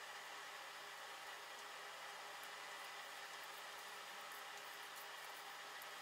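Faint, steady room tone: an even hiss with a faint low hum and no distinct sounds.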